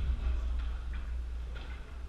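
Light, irregular taps of footsteps on a hardwood squash court floor between rallies, over a steady low hum.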